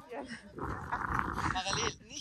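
A dog making one drawn-out, rough-sounding vocalization lasting about a second and a half, starting about half a second in.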